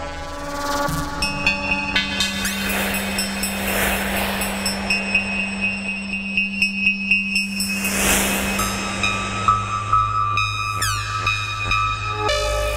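1978 Serge Paperface modular synthesizer playing a patch, with added reverb: a held low drone that steps down in pitch about two-thirds of the way in, steady high tones, a quick pulsing rhythm and two swells of noise. Near the end a few falling glides sweep down.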